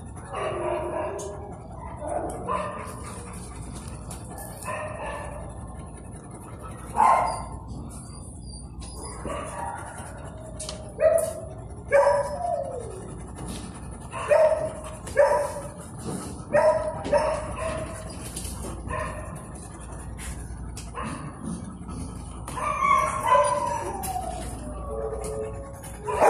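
Shelter dogs barking in kennels: single barks and short yelping calls a second or two apart, one sliding down in pitch about halfway through, with a quick run of barks near the end.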